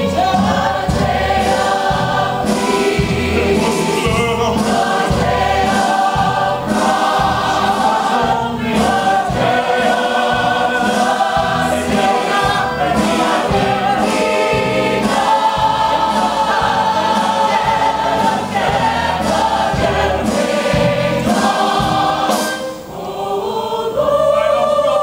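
Stage ensemble singing a gospel-style choral number in full voice over a band with a steady beat, heard from the audience in a theatre. The sound dips briefly near the end.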